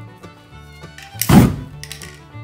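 An aerosol spray-paint can sprayed in a short, loud burst about a second and a half in, followed by a brief second spray near the end, over background fiddle music.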